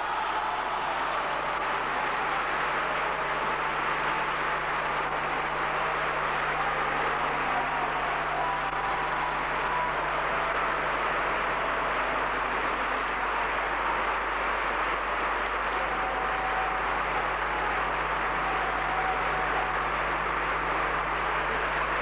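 Opera house audience applauding steadily, with a few faint calls from the crowd over it.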